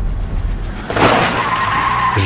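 Car engines rumbling, then about a second in a sudden burst of noise and a steady, high tyre squeal as the cars pull away hard.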